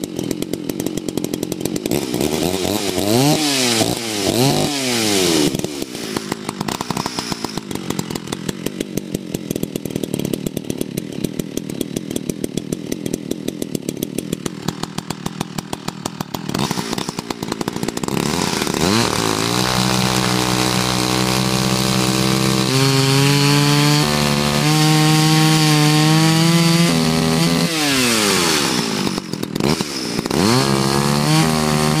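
A freshly repaired Ridgid 850-21AV two-stroke chainsaw idling, with a few quick throttle blips in the first few seconds. At about eighteen seconds it revs up to full throttle and cuts through a log for about ten seconds, the engine note shifting as the chain takes load. Near the end it drops back and revs up again.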